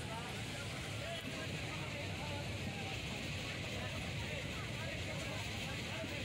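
Steady running noise of a moving passenger train heard from inside the carriage, with indistinct voices over it.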